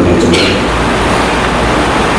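A man lecturing, repeating 'how to pronounce it', over a loud, steady rumble and hiss that fills the recording.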